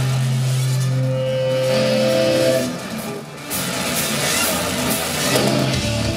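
Live rock band playing a song's amplified intro: a held low note for about two and a half seconds, a brief drop in level, then the band comes back in fuller with electric guitar.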